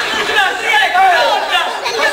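Several people talking over one another, loud and unintelligible chatter with no single clear speaker.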